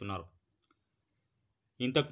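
A man's voice narrating in Telugu stops just after the start, leaving a pause of about a second and a half that is almost silent apart from one faint click, then the voice starts again near the end.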